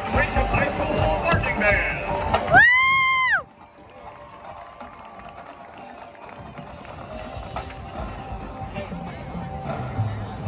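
Crowd chatter, then a loud pitched tone that bends up, holds and bends back down over about a second before cutting off suddenly. It is followed by soft, sustained marching-band notes that slowly swell.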